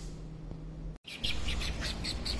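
A low steady hum for about a second, then after a sudden cut small birds chirping, with quick high calls several times a second over a low rumble.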